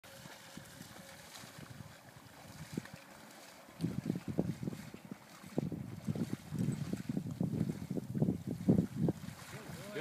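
Shallow marsh water being waded through: short, irregular splashing and sloshing steps, several a second. They begin about four seconds in and keep on to the end.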